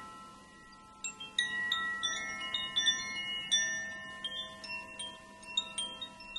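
Wind chimes ringing: many small metal chimes struck at random, clear high notes overlapping and ringing on. The strikes thicken from about a second in.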